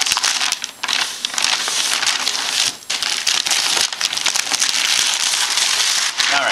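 Brown kraft paper wrapping being torn and crumpled as it is pulled off a gift box: loud, continuous crinkling and crackling of paper, with two brief lulls, one about a second in and one near the three-second mark.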